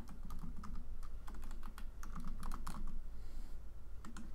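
Typing on a computer keyboard: a quick, irregular run of keystrokes entering a short command.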